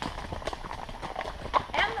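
Horse's hooves striking a dirt and gravel trail in a steady clip-clop as the mare walks along.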